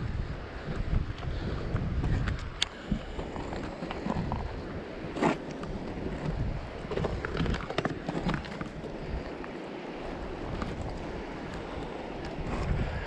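Wind buffeting the microphone over the steady rush of a fast, high river, with scuffs and a few sharp clicks of shoes on rock, clearest about two and a half and five seconds in.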